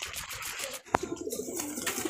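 Domestic pigeons cooing at a coop, the rolling coos starting about a second in, right after a single sharp click.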